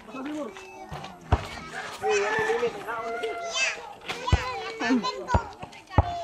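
Children's voices talking and calling out, some raised high in the middle, with a few sharp knocks in between.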